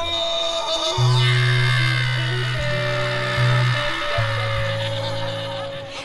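Live band music from a hip-hop concert: a bass holds long low notes under sustained chords. A crowd is shouting over it, and the music eases off near the end.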